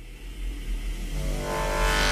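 Opening of a Tamil film song: a deep, steady bass rumble with a rising whooshing sweep that grows louder and brighter, pitched tones entering about a second in.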